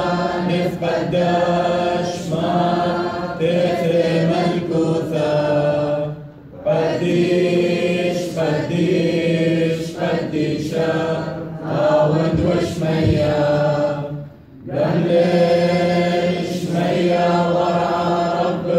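Group of voices chanting a Syriac liturgical hymn in unison, sustained and steady, with two brief breaks for breath about six and fourteen seconds in.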